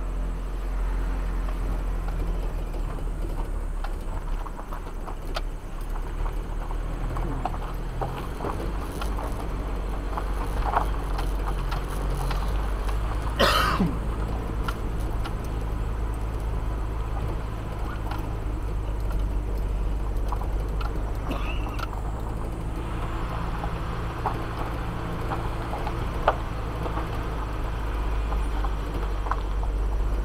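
A vehicle's engine running steadily at low speed on a rough dirt road, with scattered knocks and rattles from the bumps. About halfway through comes a brief loud sound that falls in pitch.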